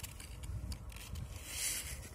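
Foil blister pack of tablets scraping and rustling against a table top as it is turned by hand, loudest about one and a half seconds in, over a low steady rumble.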